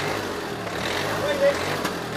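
Street noise outdoors with a vehicle engine running steadily and faint voices.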